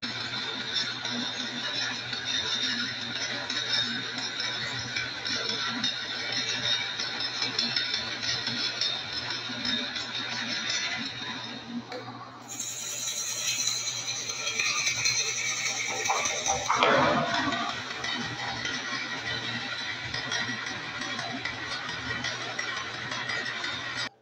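Benchtop drill press running steadily, driving a Self Cut self-feed bit into a block of wood. There is a short break about halfway through and a brief louder burst of noise a little past two-thirds of the way in.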